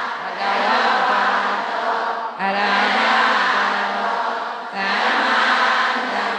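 Many voices chanting Pali in unison on one steady pitch, in phrases of about two and a half seconds with short pauses between them.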